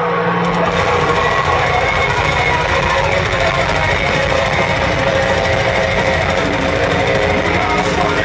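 Metal band playing live through a concert PA, heard from within the crowd: distorted electric guitars and fast, machine-gun double-kick drumming. A held low note gives way about half a second in to the full band at full volume.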